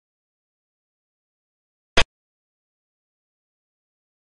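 A single short, sharp click about two seconds in: the piece-placing sound effect of a xiangqi (Chinese chess) replay as a move is made on the board.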